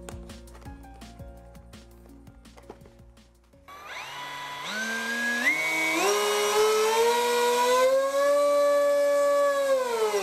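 T-Motor F80 brushless motor on an FPV wing, throttled up in a bench current test: a whine that starts about a third of the way in, climbs in several distinct steps, then holds high and steady at full throttle, drawing about 35 amps. Background music plays before the motor starts.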